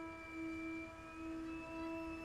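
Trumpet holding one long, soft note that wavers slightly in strength, with a faint higher tone above it that slides slightly upward about a second in.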